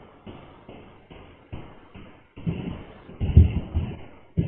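A string of irregular dull thumps and knocks coming through a video call in short, choppy bursts that start and stop abruptly, the loudest cluster a little after the middle.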